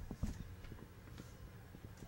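A few light knocks in quick succession just at the start, then faint scattered taps over a steady low rumble of outdoor background.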